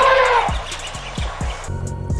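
An elephant trumpeting once, a harsh blast whose pitch rises then falls, dying away about half a second in, over background music with a steady beat.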